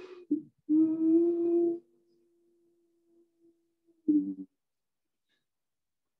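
A long, slow out-breath with a low, steady whistling tone, done as a calming breath against anxiety. It is loud for about a second, then the tone holds faintly for about two seconds more. A short voiced sound follows about four seconds in.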